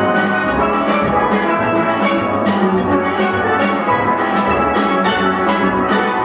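A large steel band playing: many steel pans sounding together over a drum kit and rhythm section, with a steady beat.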